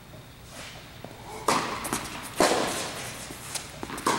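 Tennis ball struck by rackets during a rally on an indoor court: two sharp hits about a second apart, each ringing briefly in the hall, and another hit at the very end.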